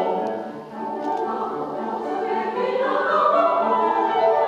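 Mixed choir of women's and men's voices singing a Japanese art song in harmony, with a brief dip in the sound a little under a second in.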